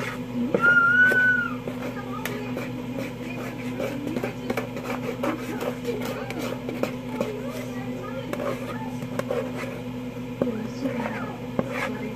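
Indistinct background voices over a steady low hum, with scattered small clicks and a brief high tone about a second in.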